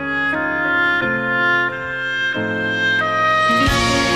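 The instrumental introduction of a song's accompaniment, with no voice yet: sustained chords that change about every 0.7 s and brighten with a swell near the end.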